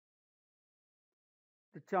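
Dead silence, then a voice begins speaking near the end.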